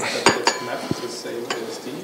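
Four or five light clinks and clicks, a couple of them with a brief ring, in a quiet room.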